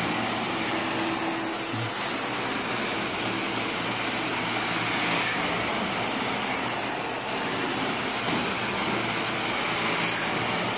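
Devpro carpet extractor's cleaning wand drawn across carpet: a steady rushing of strong vacuum suction, with a faint hum underneath.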